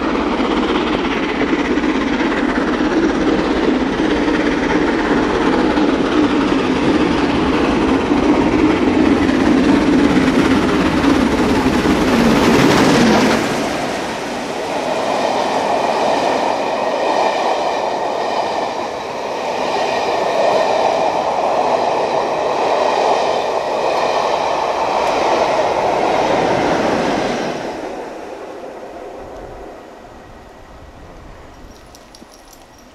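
LMS Royal Scot class 4-6-0 steam locomotive 46100 Royal Scot running through the station with its train. Loud throughout, it builds to a peak as the engine passes about 13 seconds in. Then come the coaches, with a steady clickety-clack of wheels over rail joints that fades away about 28 seconds in.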